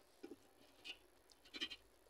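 Faint eating sounds: chewing and a hand scooping food from a steel bowl, a few short soft sounds, with a brief squeak about one and a half seconds in.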